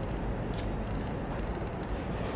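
Steady low background rumble with one light click about half a second in, from a small plastic wire connector being handled.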